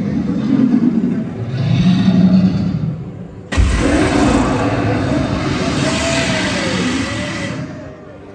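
Fire-breathing effect of the animatronic Gringotts dragon: a sudden loud gush of gas flame with a deep rumble at its start, about three and a half seconds in. It holds for about four seconds and then cuts off.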